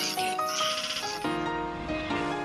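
Tone2 Electra 2 software synthesizer playing a preset: sustained keyboard-like notes, with a bright, hissy wash over the first second that fades away.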